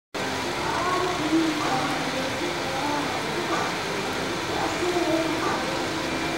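Indistinct distant voices over a steady background noise, with no clear single event.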